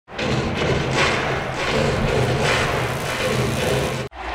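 Channel intro music: a loud, dense track with hard thumping hits roughly every half second to second, starting suddenly and cutting off at the end.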